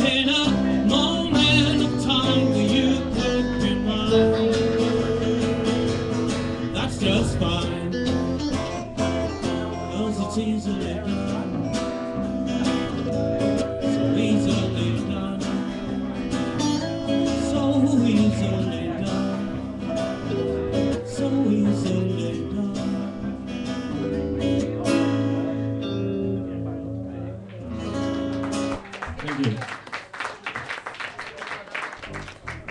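Live band playing: strummed acoustic guitar with electric guitar, bass guitar and drums, the song thinning out and stopping on a final chord just before the end.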